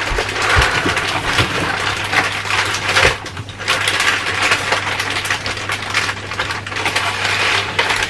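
Plastic bags and meat packaging crinkling and rustling as they are handled, with many quick crackles and clicks. A steady low hum runs underneath.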